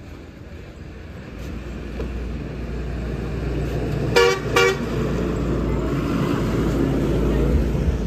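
A truck coming along the road, its low engine and tyre rumble growing louder, with two short horn toots about four seconds in.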